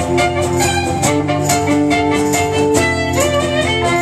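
Instrumental break played live on violin over a strummed acoustic guitar, the violin carrying the melody with a sliding note about three seconds in.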